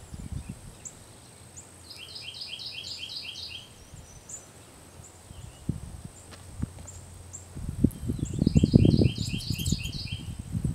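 A songbird sings a quick phrase of about seven paired notes, a couple of seconds in and again near the end, with short high chip calls scattered between. Low rumbling handling noise about three-quarters of the way through is the loudest sound.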